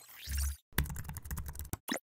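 Keyboard typing sound effect: a quick run of key clicks lasting about a second, then a single click near the end. It comes after a short swelling sweep with a deep thump.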